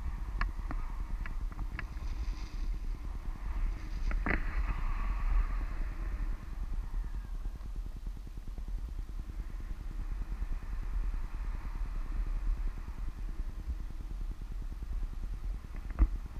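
Airflow of paraglider flight buffeting the action camera's microphone: a steady, rumbling wind noise. A few sharp clicks come in the first two seconds, and a louder click about four seconds in.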